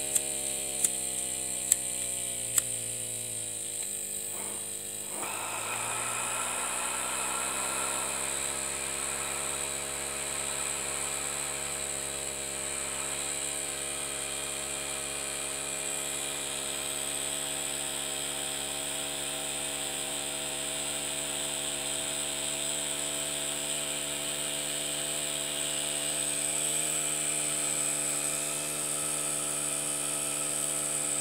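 Miniature single-cylinder steam engine running, its pitch falling as it slows after its gas burner was turned down too low, with a few sharp clicks in the first three seconds. About five seconds in, a burner hiss comes back and the engine gradually picks up speed again.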